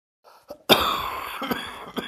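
A person coughing heavily from a chest cold: one loud cough about two-thirds of a second in that trails off slowly, then shorter coughs near the end.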